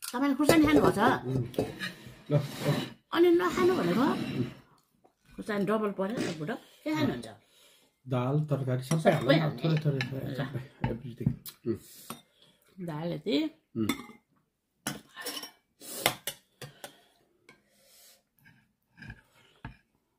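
Metal cutlery clinking and scraping against ceramic plates and bowls during a meal, with a voice talking at times in the first half.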